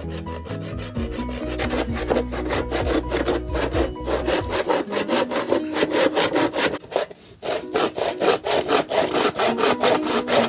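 Large hand saw cutting through a thick bamboo tube in quick, regular back-and-forth strokes, pausing briefly a little past halfway before the sawing starts again.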